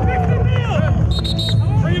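A man's voice shouting a chant of "breathe out" over the noise of a group of players, with background music underneath. A short, high-pitched tone sounds about halfway through.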